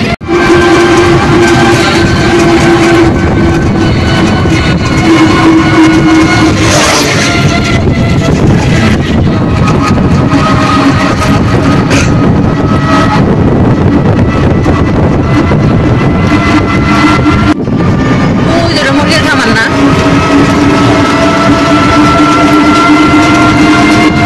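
Road and wind noise of a moving open vehicle, with steady held tones over it that shift in pitch every few seconds.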